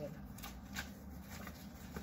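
Faint rustling and flicking of sheets of coloured craft paper as a pad is leafed through and a sheet pulled out, a few soft papery strokes.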